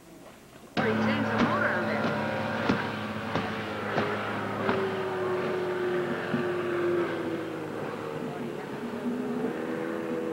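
Motorboat's outboard engine running at speed. It starts suddenly about a second in, holds a steady pitch that slowly sags and then rises again near the end, with scattered sharp knocks.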